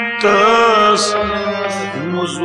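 Kashmiri Sufi folk song: a man's voice sings a long, wavering note, ending in a hiss-like consonant about a second in. Under it a harmonium holds a steady drone, with soft low thuds about every second and a half.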